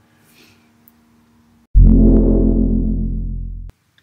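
A single low piano bass note struck about a second and a half in, ringing and slowly fading until it is cut off abruptly just before the end. Before it there is only a faint ring of earlier notes.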